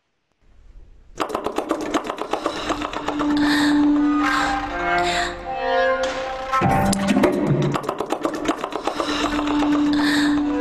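Contemporary chamber music for amplified flute, bass clarinet, violin, cello and fixed electronics fades in about a second in. It is a dense texture of rapid clicks and taps under held and sliding instrumental tones.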